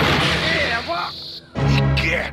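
Cartoon crash sound effect of a body smashing through a vehicle roof, over dramatic soundtrack music. A second loud music hit comes in about one and a half seconds later.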